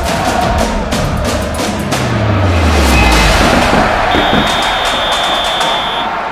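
Broadcast bumper jingle: loud music built on dense drum and percussion hits, with a low pitch sliding down about two seconds in and a high held tone over the last two seconds.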